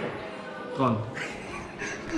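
Men's voices: a short spoken syllable with falling pitch about a second in, and fainter voice sounds after it.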